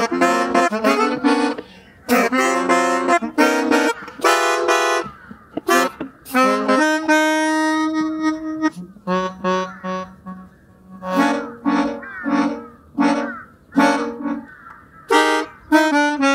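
Pianica (keyboard melodica) played by mouth: a fast run of reedy notes at first, one long held note about seven seconds in, then short, detached notes with small gaps between them.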